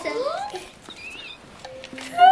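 Children's voices: a short rising vocal sound at the start, then a faint, high, wavering squeal about a second in.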